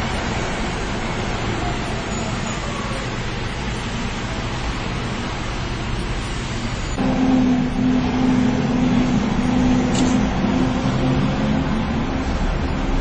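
Car cabin noise from a car driving in city traffic: a steady rumble of engine and road noise. About seven seconds in, a louder, steady hum sets in.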